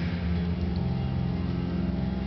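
Live band playing an instrumental passage between sung lines: sustained low bass notes with acoustic guitar, and no voice.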